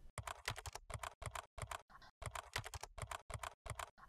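Typing on a computer keyboard: a quick run of key clicks, several a second, with a short pause about halfway through.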